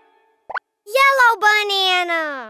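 A short cartoon pop effect, then a cartoon character's wordless vocal exclamation that rises briefly and then slides down in pitch for over a second.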